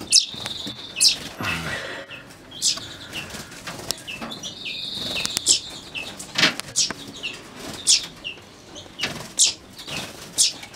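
Aviary finches calling: short, sharp high chirps about every second, with two brief high trills, one near the start and one around five seconds in.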